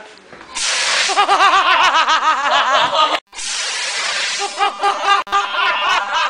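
Fire extinguisher discharging in a loud, continuous hiss that starts about half a second in, cuts out briefly just after three seconds and resumes. Laughter is heard over it.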